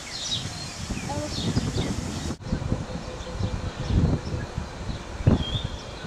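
Small birds chirping in short calls over indistinct voices and low rumbling noise, with an abrupt break a little over two seconds in.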